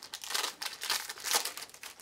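Wrapper of an Upper Deck trading-card pack crinkling as it is torn open by hand, a string of short crackling rustles with the loudest about half a second in and again past the middle.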